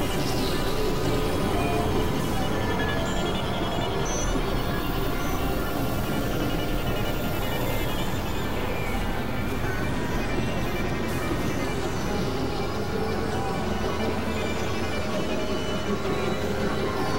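Several pieces of recorded music playing over one another at once, with a voice among them, making a dense, unbroken wash of layered tones and noise.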